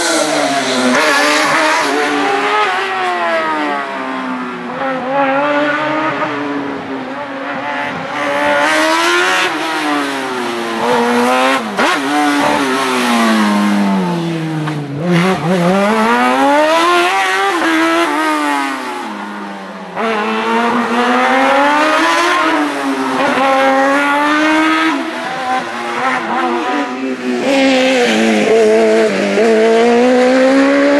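Racing car engines revving hard, pitch climbing and falling back again and again as the cars accelerate and brake between the cones of a slalom course. More than one car is heard in turn, with a break in the sound at about 20 seconds.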